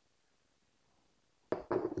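Near silence for about a second and a half, then a man's voice begins speaking.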